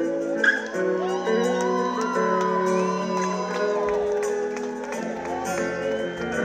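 Live band music: held chords under a gliding melody line.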